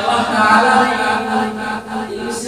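A man's voice chanting a long, drawn-out melodic line, the notes held steadily, with a brief break near the end.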